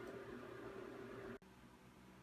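Faint room tone: a low hiss with a faint steady hum that cuts off suddenly about two-thirds of the way through, leaving near silence.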